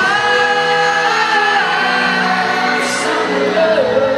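Live pop ballad heard from far back in an arena crowd: several voices hold long sung notes together over the band.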